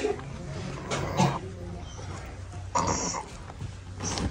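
A boy's throat sounds as water is poured into his open mouth from a steel tumbler, two short bursts about a second and about three seconds in, over a steady low hum. He swallows with difficulty, and the water sometimes catches in his throat.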